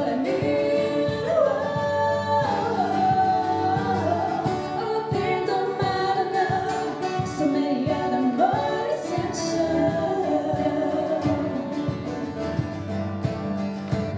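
Two women singing a pop-rock song together into microphones, accompanied by a strummed acoustic guitar.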